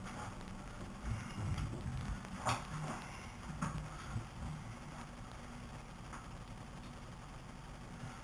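Footsteps and handling noise as an acoustic guitar is fetched and slung on: a few soft knocks and scuffs in the first half, then only a faint steady room hum.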